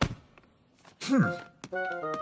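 A short thunk at the start, then a brief voiced sound from a cartoon character about a second in, and background music with held notes starting near the end.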